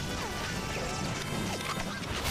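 Action-scene sound effects, crashes and impacts with a few short falling whistles, mixed over music.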